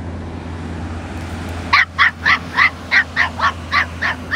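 A small dog yapping in a quick, even run of about eight short, high yaps, starting a little under two seconds in. Beneath it runs a steady low rumble.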